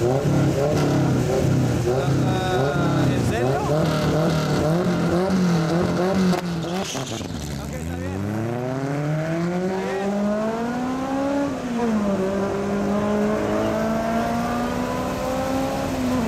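Drag-racing cars, a Ford Mustang LX Fox-body and a Honda CRX, revving at the starting line in quick repeated blips, then launching: one engine climbs steadily in pitch for about four seconds, drops sharply at an upshift, and climbs again more slowly in the next gear.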